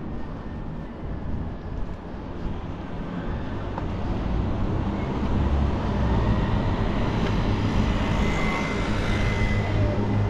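Street traffic: a motor vehicle's low rumble with a faint whine, growing steadily louder as it approaches.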